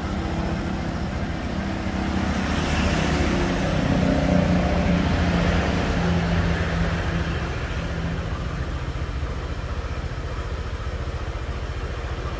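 Honda Vario 125's single-cylinder scooter engine idling steadily, swelling a little louder from about two to six seconds in before settling back.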